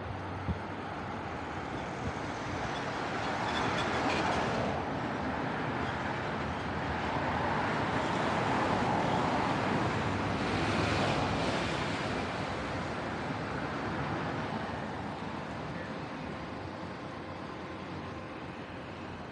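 Motor traffic passing on a city road: a steady rush of vehicles going by. It swells louder as vehicles pass close about four and eleven seconds in, then eases off near the end.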